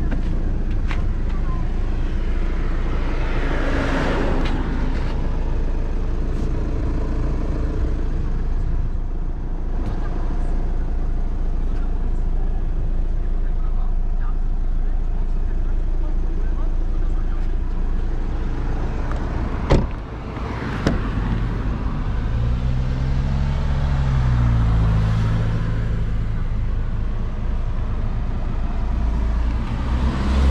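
Steady low rumble of a vehicle, with a voice in the background. A sharp click comes about twenty seconds in, and a few seconds later a low engine-like tone rises and falls in pitch.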